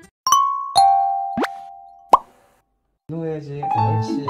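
Edited-in cartoon sound effects: two chime notes, the second lower, then a quick rising whistle and a sharp pop. After a brief silence, cheerful background music starts about three seconds in.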